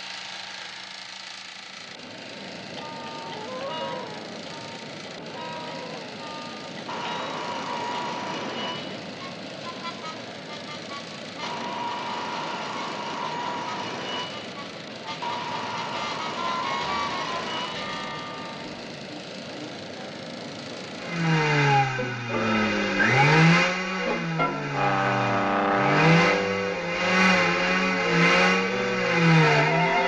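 Cartoon soundtrack: a steady noise with faint wavering tones for about twenty seconds, then lively music with many swooping slides in pitch from about twenty-one seconds in.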